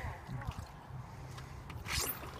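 Quiet outdoor lull with faint, low voices, and a short light knock near the end.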